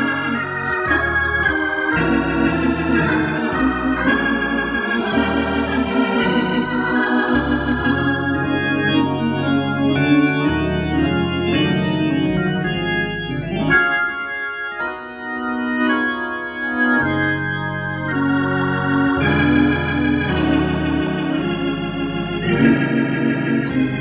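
Gospel organ played live: sustained chords that change every second or two under a moving upper line. The bass drops out briefly about two-thirds of the way through.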